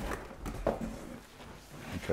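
Cardboard shoeboxes handled and lifted out of a large cardboard box, with faint scraping and a soft knock a little over half a second in.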